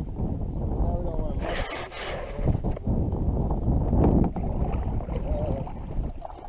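Wind buffeting the microphone and choppy water lapping against a kayak's hull, with a burst of splashing about a second and a half in that lasts about a second.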